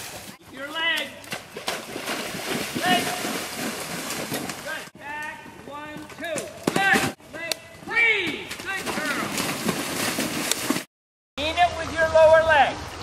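Indistinct voices that no words can be made out of, over steady outdoor background noise. The sound is broken by several abrupt edit cuts and a brief dropout to silence near the end.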